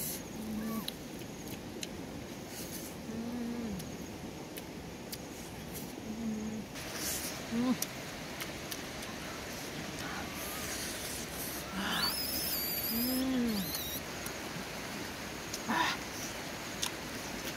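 Short low hummed 'mm' sounds from a person's voice, each rising and falling, repeated every few seconds, with scattered mouth clicks and smacks of someone eating with their hands. A brief high chirp sounds about three-quarters of the way through.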